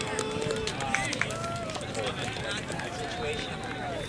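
Faint, distant voices of players and spectators calling across an outdoor soccer field during play, with scattered small clicks.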